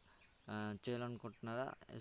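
A man's voice narrating, after a brief pause at the start. A steady high-pitched tone runs faintly underneath.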